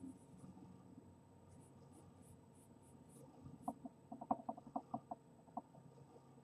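Charcoal stick drawing on paper in short, faint strokes. In the second half, a quick run of about eight short pitched clucking sounds, louder than the strokes, from an unclear source.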